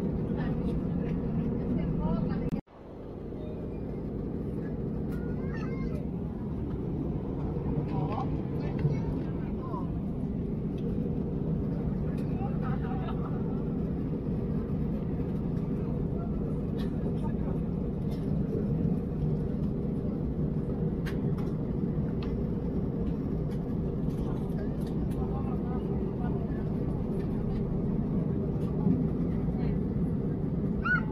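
Steady rumbling drone of a jet airliner's cabin in cruise, engine and airflow noise, with faint passenger voices in the background. The sound cuts out abruptly about two and a half seconds in and fades back up within a second.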